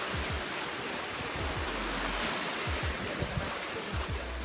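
Small lake waves breaking and washing on a rocky shore, a steady rush, with wind buffeting the microphone in low rumbles.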